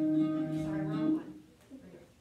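Music: a single sung note held steady, wavering slightly near its end, which stops about a second in and leaves only faint sounds.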